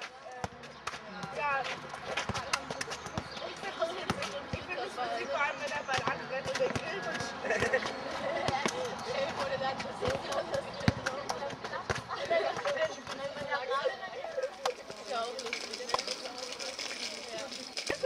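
Indistinct chatter of several young voices outdoors, overlapping, with frequent sharp knocks and clicks scattered throughout.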